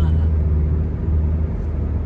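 Steady low drone of engine and road noise heard from inside a moving vehicle.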